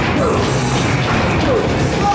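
Loud music over a continuous crashing, clattering din in a busy indoor arcade play area.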